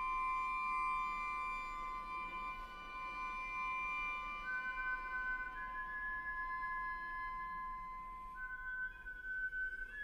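Contemporary chamber music for flute and string trio: soft, long-held high notes that sit close together and change slowly. A new, higher note enters about halfway through, and the held notes shift again near the end.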